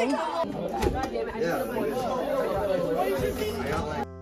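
Several people talking over one another in a room: steady group chatter.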